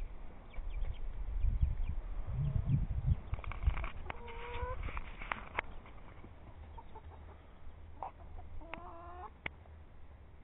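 Backyard chickens clucking, with a drawn-out call about four seconds in and a rising call near the end, among a few sharp clicks. A low rumble fills the first few seconds.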